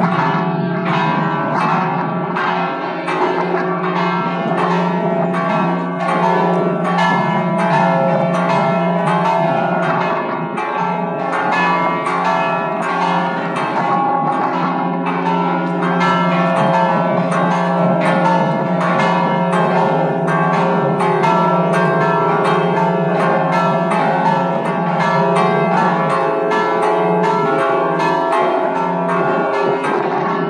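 Five-bell peal of church bells, tuned F#, E, C#, C and C#, struck in quick overlapping strokes, several a second, that ring on without a break. It is a festive peal rung before the High Mass.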